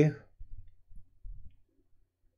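A man's voice trails off at the start, then comes a short series of faint low clicks and knocks from handling a computer mouse at the desk.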